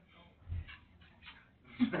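Background chatter of people talking, with a low thump about half a second in and a laugh near the end.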